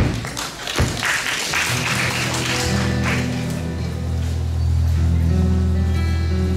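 Audience applause dying away over the first three seconds as an acoustic guitar and an upright bass start playing the song's opening, with the bass notes coming in about a second and a half in.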